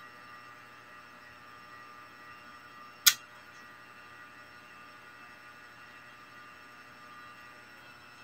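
A single short, sharp click about three seconds in, over a faint steady hum with a few thin high tones.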